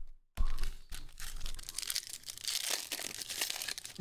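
Foil trading-card pack wrappers crinkling and being torn open by hand, a steady run of crinkles and small crackles that begins a little under half a second in.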